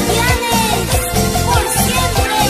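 Band music with electric bass, electronic keyboard and a steady beat of about two beats a second, carrying a melody that slides in pitch.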